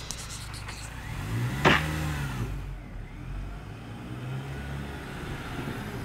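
Mini Cooper S Works' supercharged four-cylinder engine revving as the car pulls away, rising and falling in pitch twice. There is a sharp knock a little under two seconds in.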